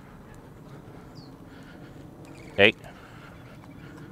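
Quiet street ambience with faint footsteps of a person and a dog walking on a concrete sidewalk, and one short spoken command about two and a half seconds in.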